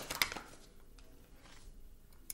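Tarot cards handled in the hands as the deck is split: a couple of faint clicks about the first quarter second, then quiet room tone with a faint tick near the end.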